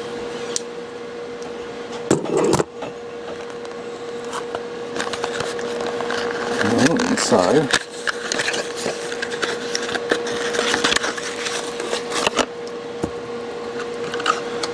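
Small cardboard box being slit and torn open with a knife: crackling, tearing and rustling of the cardboard and its plastic wrap, loudest about two seconds in and through the middle. A steady faint hum runs underneath, with a brief bit of humming voice about seven seconds in.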